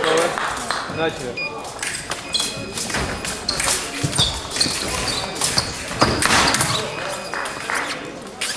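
Foil fencers' footwork thudding and stamping on the piste, with a few sharp metallic pings of blades, over voices in the hall.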